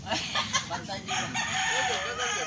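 A rooster crowing, its call ending in one long, level held note through the second half.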